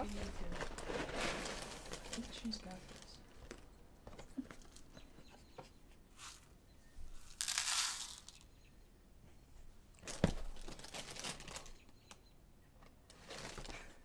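Plastic cereal bag crinkling as it is handled inside the box, then a short rush of Cocoa Krispies poured from a measuring cup into a plastic bowl a little past halfway, and a single sharp knock about ten seconds in.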